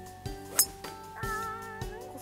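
A golf club striking a ball once, a sharp click about half a second in, over background music. The contact is a glancing, scuffed strike across the ball.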